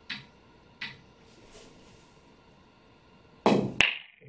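Pool break on a nine-ball rack: near the end, the cue strikes the cue ball and the cue ball smashes into the racked balls with a loud, sharp crack and clatter of ball on ball. Two faint clicks come earlier.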